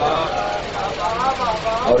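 A man's voice with voice-like rising and falling pitch, over a steady low rumble.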